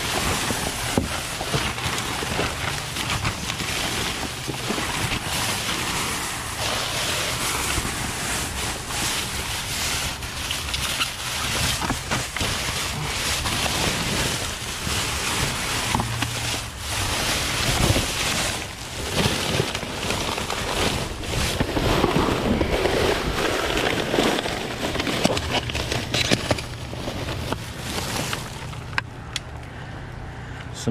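Plastic trash bags, cardboard and paper rustling and crinkling as they are rummaged through by hand in a dumpster, with a steady low hum underneath.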